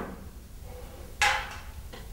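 A plate set down on the hard stage floor: a sharp clatter about a second in, ringing briefly, with the fading tail of an earlier knock at the start.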